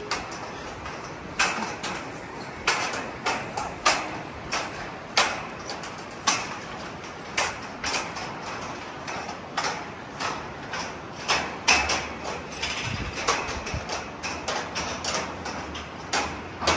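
Hikers' boots stepping on a suspension footbridge's metal grating deck, a clank with each step, about one to two steps a second and slightly uneven.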